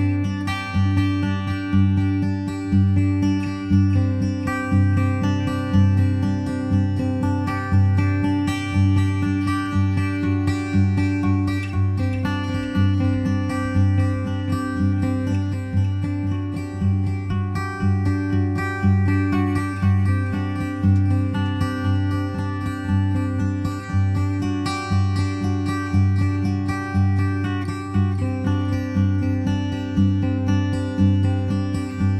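Background music: a gentle acoustic guitar piece, plucked strings at an even, steady pace.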